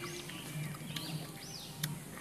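A bird singing faintly, repeating short arched whistled notes, with a couple of sharp clicks near the end.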